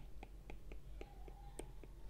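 Stylus tapping on a tablet's glass screen while handwriting: a faint, quick series of light clicks, about four to five a second.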